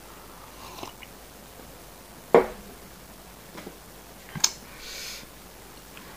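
Quiet mouth and swallowing sounds from a man who has just drunk water, with one sharp click a little over two seconds in. A smaller click about four and a half seconds in is followed by a short breathy exhale.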